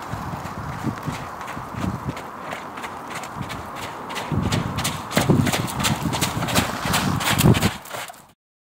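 Hoofbeats of a horse cantering on a wet sand arena: a rhythmic run of dull thuds with sharp clicks. They grow louder from about halfway as the horse comes close past.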